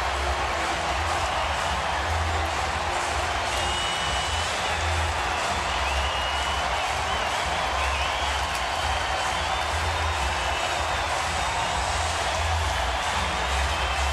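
Ballpark crowd cheering a home run, with music playing over it and a recurring bass pulse.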